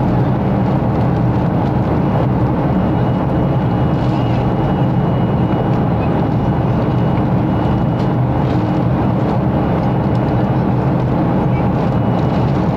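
Steady cabin noise of a Boeing 737-500 climbing: the CFM56 jet engines and the rushing airflow make an even, low roar that does not change, with a faint high steady tone above it.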